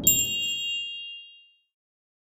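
A single bright, bell-like ding struck once and ringing out, fading away within about a second and a half as the low tail of the preceding music dies away underneath.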